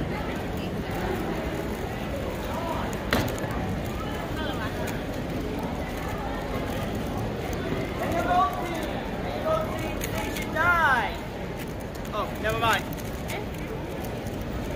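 Fast, scratchy plastic clicking of a 3x3 speedcube being turned during a timed solve, over steady chatter in a busy hall. A sharp click comes about three seconds in, and short high-pitched voices cut in during the second half.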